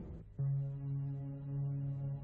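Background score during a scene change: after a fading hit, a low sustained note enters just under half a second in and holds steady.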